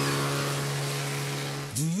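A low, steady, horn-like tone held for about two seconds over a rushing noise like breaking sea spray, cutting off as a woman's voice begins.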